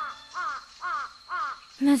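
Crows cawing: four short falling caws about half a second apart, the evening-crow sound effect laid over a sunset scene.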